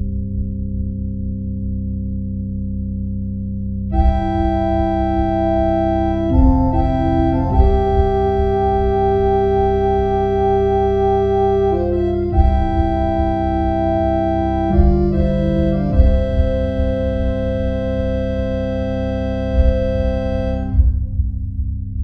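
Instrumental music: held organ chords that change every few seconds over a low, throbbing bass. The chords grow fuller about four seconds in and drop away shortly before the end.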